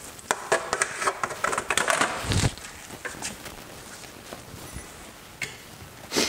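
A pan being set down under a table: a run of small knocks and clicks, with a dull thump a little over two seconds in, then quieter handling.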